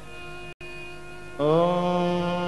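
Devotional mantra chanting on a held, droning note. It cuts out for an instant just after half a second in, and about one and a half seconds in a louder voice slides up into a new sustained note.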